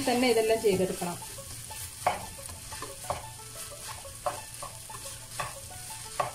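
A slotted spatula scraping and knocking against a nonstick wok as fried rice is stirred and tossed, with a light sizzle under it. The sharp scrapes come roughly once a second.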